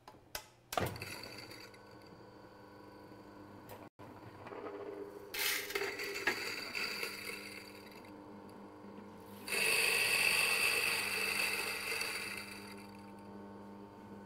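Mahlkönig electric burr coffee grinder grinding a single dose of beans to a medium-coarse setting: a steady motor hum, much louder and harsher for about three seconds partway through while the beans pass through the burrs, then easing off. A few sharp clicks in the first second.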